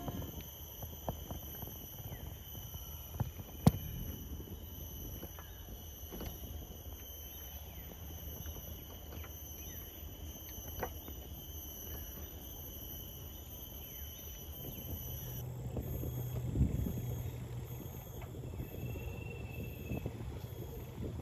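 Steady high-pitched insect chorus in woodland, with a low rumble underneath. A sharp click comes a little under four seconds in and a soft thump comes near 17 seconds.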